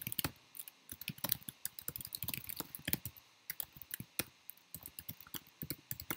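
Typing on a computer keyboard: a quick, irregular run of key clicks broken by short pauses.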